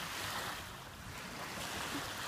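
Small lake waves lapping on a sandy shore: a soft wash that swells and eases, with a low rumble of wind on the microphone.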